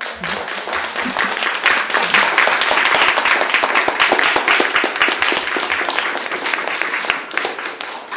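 Small audience applauding, swelling over the first couple of seconds, holding steady, then fading out at the end.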